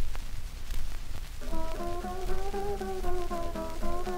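Old 1918 acoustic recording of Hawaiian guitar music played on the original Martin Kealakai-model guitar, full of record hiss and crackle. At first there is only the surface noise; about a second and a half in, a wavering, sliding melody comes in over evenly plucked chords.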